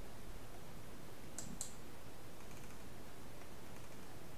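Two quick computer mouse clicks, close together about a second and a half in, over a steady low hiss of room noise.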